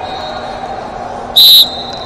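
A referee's whistle blown once, a short sharp blast about a second and a half in, over the steady background noise of a busy sports hall.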